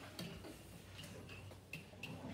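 A pen writing numbers on a classroom whiteboard: a run of faint taps and short squeaks as the strokes are drawn.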